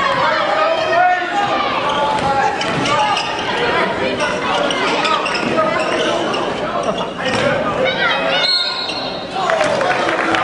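A basketball bouncing on a hardwood gym floor during live play, with crowd and player voices echoing in a large gym. Near the end comes a short high whistle blast: a referee stopping play, here for a foul.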